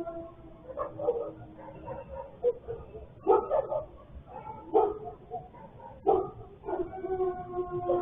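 Dogs howling in long, drawn-out wails, broken by several sharp barks, strongest about a third and halfway through, picked up thinly by a security camera's microphone.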